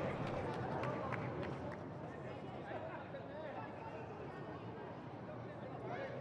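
Racetrack ambience: faint crowd chatter over steady background noise, easing a little in level.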